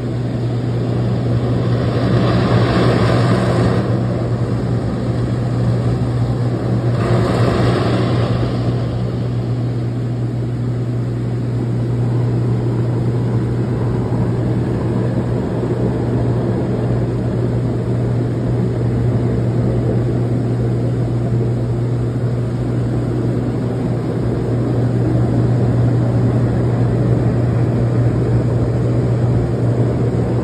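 HydroMassage dry-hydrotherapy bed running, its pump and moving water jets giving a steady low hum under a rushing noise, set at pressure 7 and speed 3. Two louder rushing swells come about two and seven seconds in.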